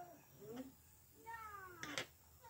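A faint, short vocal call, then a longer call that falls in pitch about a second and a half in, and a sharp click at the very end.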